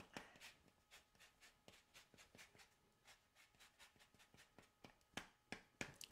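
Faint, quick scraping strokes of a lemon being rubbed across a zester, with a few sharper strokes near the end.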